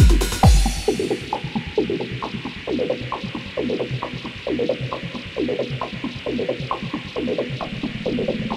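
Electronic dance music from a DJ mix. About a second in, the kick drum and hi-hats drop out for a breakdown, leaving a repeating riff of short synth notes that bend downward in pitch.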